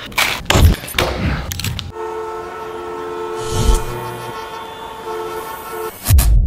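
A few sharp crunching strokes, then a held chord of several steady tones like a horn for the last four seconds, with a short low thud in the middle.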